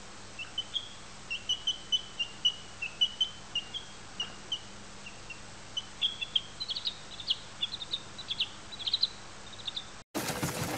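A baby chick peeping over and over: short, high chirps a few times a second, coming quicker and sharper in the second half.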